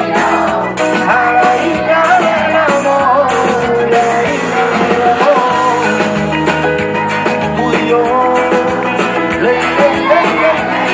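A live band performing a song: a male singer sings a wavering melody over drums and backing instruments, recorded from the crowd.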